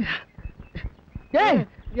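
A person's short cry, falling steeply in pitch, about a second and a half in, with a couple of faint clicks before it.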